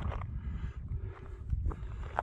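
Wind buffeting the microphone as a steady low rumble, with a few faint footstep crunches on a gravel track.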